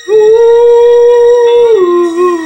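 A man's singing voice holding one long, loud wordless note at a steady pitch, then sliding down to a lower note near the end, over a soft keyboard backing.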